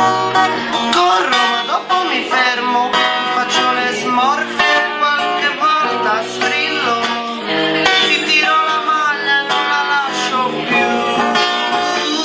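Music: a plucked guitar plays on, with a melody line that slides up and down in pitch in places.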